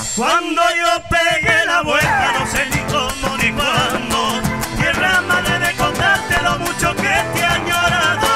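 A live Argentine folk band playing a chacarera on violin, guitars and drums, with a steady beat of drum strikes and sliding, wavering violin or vocal lines over it.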